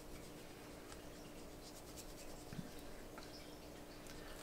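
Faint, soft strokes of a watercolor brush on paper as paint is brushed on, over a low steady hum.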